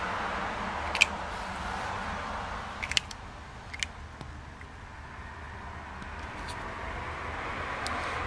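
Red-footed tortoise biting and crunching dry tortoise pellets: a few short, sharp crunches about a second in, around three seconds in and just before four seconds, over a steady low background rumble.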